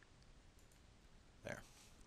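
Near silence, room tone, with a faint computer mouse click near the start.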